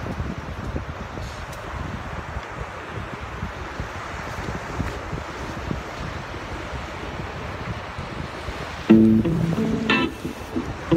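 Steady rushing of wind on the microphone and breaking surf, then, about nine seconds in, music with plucked guitar starts suddenly and much louder.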